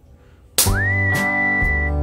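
Background music starts suddenly about half a second in: a whistled melody, its first note sliding up and held long, over strummed acoustic guitar.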